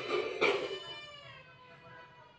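A cat meowing: one long drawn-out meow that falls slightly in pitch and fades out over about a second and a half.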